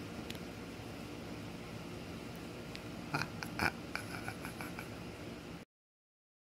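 Faint steady hiss, then about three seconds in a few short sharp clicks followed by a quick string of small squeaky clicks, the noise of fingers handling a rubbery stress ball or the recording device; the sound then cuts off suddenly near the end.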